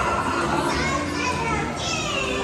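Children's voices and chatter mixed with background music.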